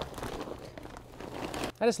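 Potting soil poured from a bag into a fabric pot: a steady hiss of loose soil sliding out and the bag shifting, which stops shortly before the end.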